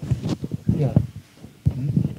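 Speech: a man's low voice talking indistinctly in short phrases.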